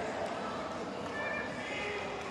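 Players' footsteps and pads thudding on artificial turf during an American football play, with voices calling out.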